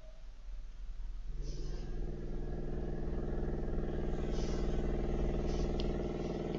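A steady motor hum with an even stack of tones. It grows louder over the first two seconds, then holds steady.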